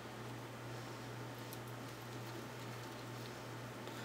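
Faint handling sounds: a few soft ticks and rustles as a strand of tinsel trim is twisted by hand onto the rim of a paper plate, over a steady low hum.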